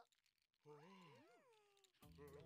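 A cartoon character's wordless vocal sound: one drawn-out call, a little over a second long, that rises and then falls in pitch, starting about two-thirds of a second in.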